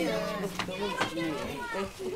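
Many children chattering and calling out at once, a busy classroom hubbub of overlapping young voices.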